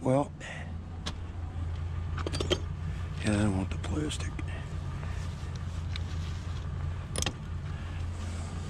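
Pieces of scrap steel clinking and clattering a few times as they are handled and set on a plastic trash-cart lid, over a low steady hum from an idling vehicle.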